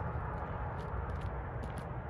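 Outdoor background: a low steady rumble with a few faint, sharp ticks in the second half.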